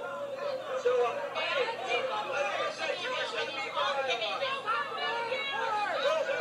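A crowd of many voices talking and shouting over one another at an outdoor political rally where hecklers are yelling, played back through a television speaker.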